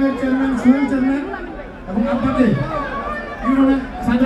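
A dense crowd of men shouting and talking over one another, with loud drawn-out calls that rise out of the general chatter.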